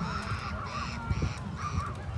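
Birds giving harsh, repeated calls: four short calls about half a second apart, over a low rumble.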